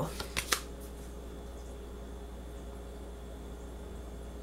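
A few brief clicks of tarot cards being handled in the first half-second, then a steady low room hum.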